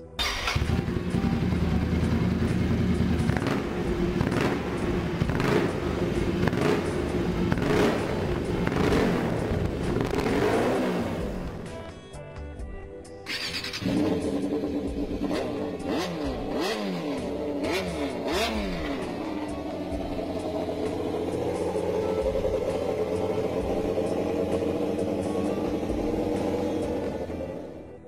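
A custom Ducati Scrambler's air-cooled L-twin running and revved with repeated throttle blips. After a short break about halfway through, a Yamaha FZR600-based custom's inline-four revs a few times, then runs steadily.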